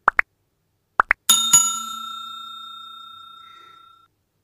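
Like-and-subscribe overlay sound effect: two pairs of quick pops, then a bell struck twice whose ring fades away over about two and a half seconds.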